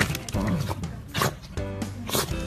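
Background music over a corgi giving short barks.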